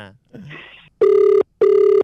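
Telephone ringback tone heard down the line: one double ring, two short bursts of a steady tone a fifth of a second apart. It means the called phone is ringing and has not yet been answered.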